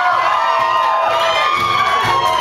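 Concert audience cheering and shouting, many voices at once.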